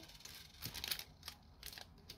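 Faint clicks and rustles of small flat clay beads and a thin metal hoop earring being handled, with several short ticks spread through.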